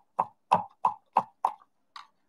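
A series of six or seven light taps or clicks, about three a second, stopping about a second and a half in.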